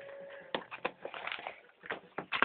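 A few faint clicks and knocks of handling noise near a phone set down to record, after a faint steady hum in the first half second.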